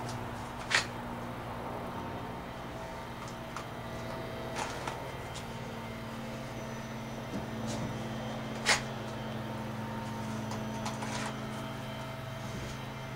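Sharp clicks from a Kydex holster as a pistol is drawn and snapped back in: one loud click about a second in, another near nine seconds, and fainter ticks between. A steady low hum lies underneath.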